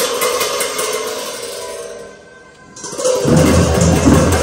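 Large Tibetan monastic hand cymbals clashed in procession: a struck crash rings out and fades over about two seconds, then about three seconds in a loud new burst of cymbals comes in with a deeper sound beneath it.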